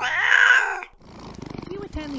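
A cat's short, loud cry lasting just under a second, then a cat purring quietly with a rapid pulse from about a second in.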